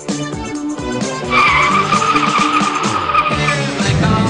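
Car tyres squealing for about two seconds, starting a little over a second in, as the car corners hard. Background music plays throughout.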